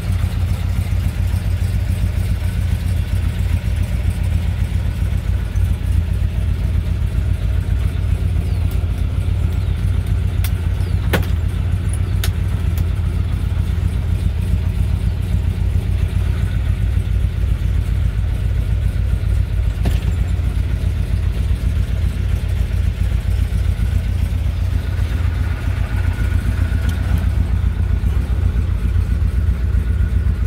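1967 Chevrolet Chevelle SS engine idling steadily, with a few short clicks partway through.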